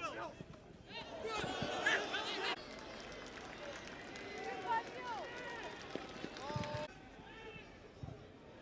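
Football players and spectators shouting and calling across the pitch, with the background changing abruptly twice, and a single dull thud late on.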